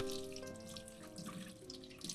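Tap water running into a kitchen sink and splashing over leafy greens as they are rinsed by hand, with background music playing.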